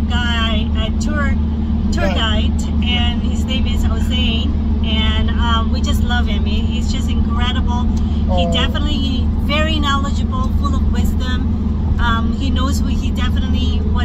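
A woman talking over the steady low drone of engine and road noise inside a passenger van's cabin.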